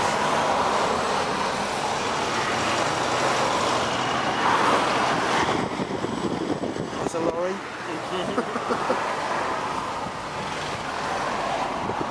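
Steady road and traffic noise heard from inside a car crawling in heavy traffic: a continuous hiss of tyres and engines from the surrounding vehicles.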